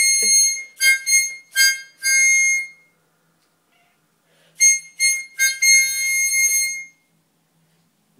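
Harmonica played in short, high-pitched blasts, a held note closing each run. One run of notes fills the first three seconds; after a pause of about a second and a half, a second run goes on until about a second before the end.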